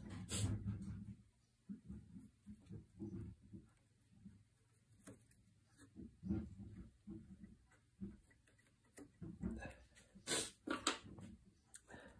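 Small nail scissors snipping and tugging at cord binding wrapped round a wooden gun stock: faint, scattered handling sounds, with a couple of sharper clicks near the end.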